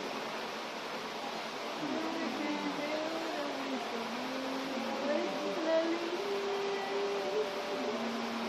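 A faint voice with long, drawn-out pitched tones that step and glide slowly, over a steady hiss.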